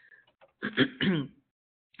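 A person clearing their throat in two short pushes, heard over a narrow-band call line.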